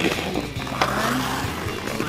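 Ice skate blades scraping on the ice as a skater takes a forward stride.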